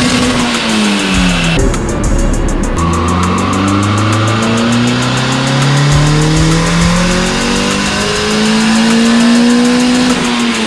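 Honda D16 four-cylinder engine running on a chassis dyno: the revs drop in the first second or so, then climb steadily over about six seconds in a pull and begin to fall off right at the end.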